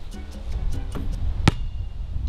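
Light background music over a low wind rumble, with one sharp knock about one and a half seconds in from the shot basketball striking.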